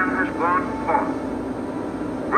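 Franklin Roosevelt's voice from an old radio-address recording, speaking a few words in the first second, over a steady drone that runs on after he pauses.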